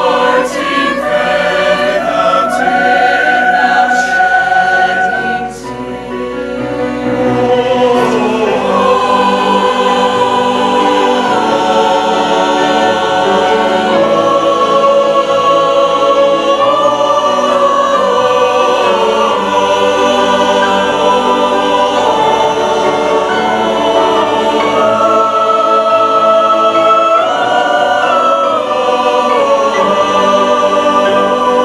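Mixed choir singing a slow, sustained choral passage in held chords. There is a short break between phrases about five and a half seconds in, then the choir comes back in fuller.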